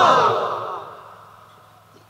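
A drawn-out, breathy voice sound, wavering in pitch, loudest at the start and fading away over about a second and a half.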